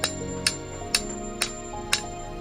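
Hammer blows on a hand-held metal tool held against stone, five sharp strikes about two a second, over background music.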